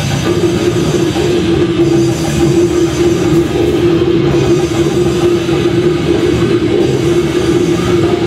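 A metal band playing live, loud and dense, with distorted electric guitar and bass and a drum kit, over one steady held note.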